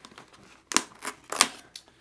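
A few sharp plastic clicks as the helmet's removable liner side pad is unclipped from the shell, the loudest about three-quarters of a second and a second and a half in.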